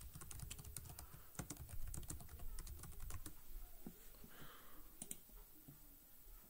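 Faint typing on a computer keyboard: a quick run of keystrokes over about the first three seconds, then a couple of isolated key clicks.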